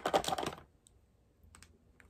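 A quick run of small hard clicks and clattering, like makeup items or their plastic cases being picked up and handled, lasting about half a second, with two faint clicks about a second later.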